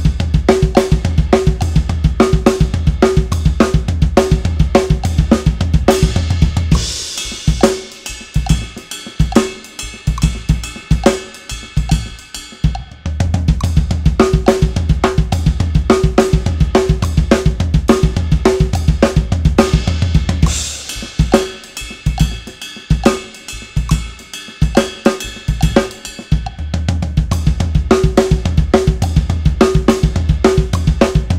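Acoustic drum kit played in repeating phrases: dense stretches of a fast hand-to-foot split fill in sixteenth-note triplets, with rapid kick drum under the snare, toms and hands, alternate with sparser groove playing. A cymbal crash opens each sparser stretch, about seven seconds in and again about twenty-one seconds in.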